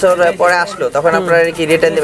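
A man talking, in speech only, with no other sound standing out.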